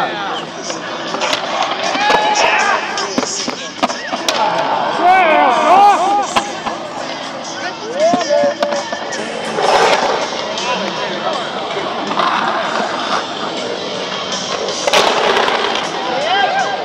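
Skateboard wheels rolling and grinding on a concrete bowl, with loud sharp board impacts about ten and fifteen seconds in, under people whooping and calling out.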